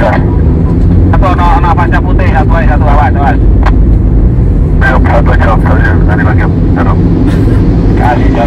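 Steady low rumble of road and engine noise inside a Honda Freed's cabin while driving at speed. Voices talk twice over it, in the first half and again past the middle.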